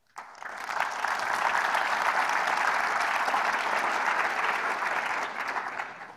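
Audience applauding at the close of a talk, swelling over the first second, holding steady, then fading near the end.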